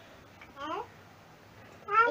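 A young girl's voice: one short sung syllable, its pitch rising, about half a second in, in a pause between phrases of her chanted prayer.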